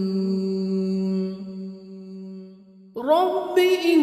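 A single voice chanting a Quranic supplication in long, drawn-out notes. One steady held note fades away after about a second, and a new note comes in suddenly about three seconds in, rising in pitch and then held.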